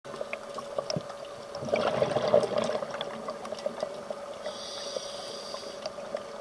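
A scuba diver breathing through a regulator, heard underwater. A gush of exhaled bubbles comes about two seconds in and a thin hiss near the end, over a steady hum and scattered faint clicks.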